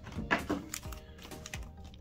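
Foil booster packs and a cardboard card-game deck box being handled: a few light crinkles and taps, scattered unevenly, over quiet background music.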